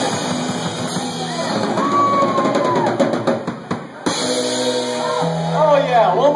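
Rock band playing, with drum kit and guitar and a little voice over it. The music drops away briefly about three and a half seconds in, then comes back with held notes.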